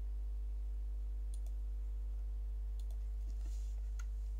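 A few faint, sharp computer mouse clicks, spread across a few seconds, over a steady low electrical hum.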